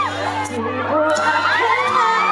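A live concert crowd of fans cheering and screaming in many overlapping high-pitched voices, over steady backing music.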